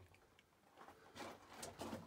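Near silence in a cramped mine tunnel, broken by a few faint short scuffs from about a second in.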